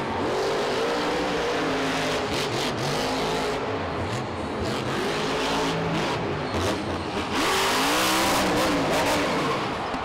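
Monster truck's supercharged V8 engine revving hard and repeatedly, its pitch rising and falling with the throttle. From about seven seconds in it gets louder, under a rush of noise.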